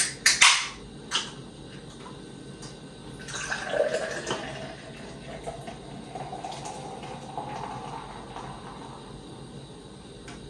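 A few sharp clicks at the start, then Maduro Brown Ale poured into a glass: a splashing, hissing pour whose tone rises steadily as the glass fills.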